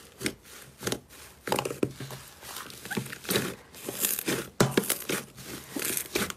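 Hands kneading and squeezing a large lump of thick green slime, giving irregular crackly, squishing bursts as it is pressed and folded.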